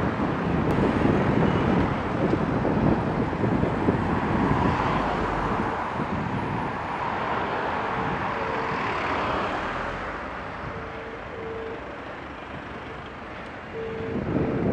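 Wind rushing over the microphone of a bicycle-mounted camera, mixed with road and traffic noise, as the bike rides along a line of queued cars. It is loudest in the first few seconds and eases after about ten seconds.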